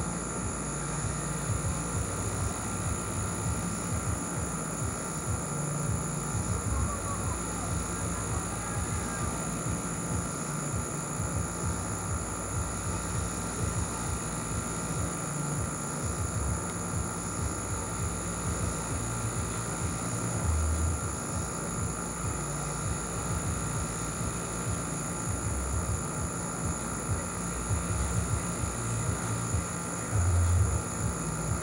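A steady background drone with several constant high-pitched tones over an uneven low rumble, mechanical in character, with no single event standing out.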